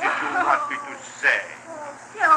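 Wordless whimpering and sobbing voice sounds, heard over the steady low hum of an early disc recording.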